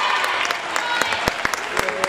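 Scattered hand clapping and applause, with voices mixed in.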